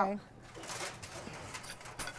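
Faint rustling and light scraping as a disposable aluminium foil pan is slid out across a wire oven rack.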